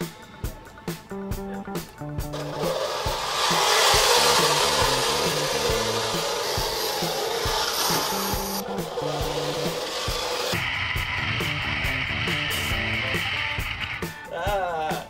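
Background music with a beat, over a loud rough grinding noise from about two seconds in until about ten seconds: a T'Rex robot tank chassis driving on its metal treads, gear motors running.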